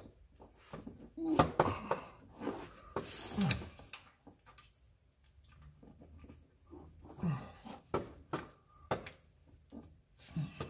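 Hand tools on a long extension clinking and knocking against the underside of the car as bolts are worked, in scattered separate strokes, with a few short voiced grunts of effort.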